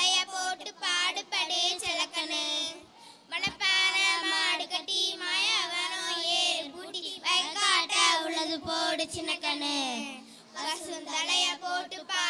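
Children singing together into stage microphones without instrumental backing, with short breaks between phrases.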